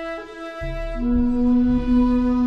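Shakuhachi bamboo flute playing long held notes over a low accompaniment, with a new, lower note entering about a second in.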